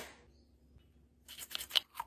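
Small hard plastic parts being handled and fitted together. A sharp click opens it, then after a quiet second comes a run of small clicks and rustles, ending in another snap.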